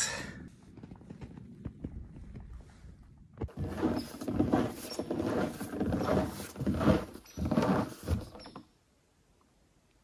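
Boot footsteps crunching on a snow-covered wooden boardwalk, a step roughly every half second, growing louder as the walker comes closer and stopping suddenly near the end. Before them there is only faint rustling.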